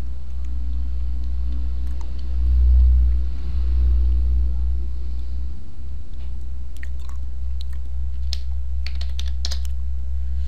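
Computer keyboard keys typed in a quick run of clicks during the last three seconds, over a steady low hum that swells briefly a few seconds in.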